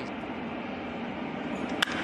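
Steady background hum of a ballpark broadcast, then near the end a single sharp crack of a baseball bat hitting a pitch squarely.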